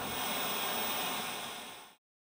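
Steady hiss of background noise from the street recording, fading out to silence near the end.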